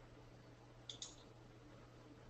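Two quick computer mouse clicks in close succession about a second in, over near-silent room tone with a faint steady low hum.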